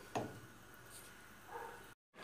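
A single light knock of a wooden spoon against a stainless steel pot just after the start, then faint room tone that cuts off abruptly at the end.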